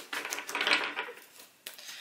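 Tarot cards being handled and drawn from the deck: a run of soft, irregular rustles and light card clicks, dying down after about a second.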